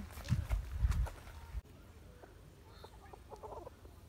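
A free-range hen clucking, over low wind rumble on the microphone that cuts off abruptly about a second and a half in. After that it is quiet, with a few faint short calls.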